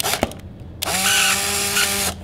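Polaroid SX-70 Alpha 1 firing: two quick clicks of the shutter and mirror, then the camera's built-in motor whirs steadily for about a second to drive the film out, and cuts off sharply. The motor runs off the battery in the film pack.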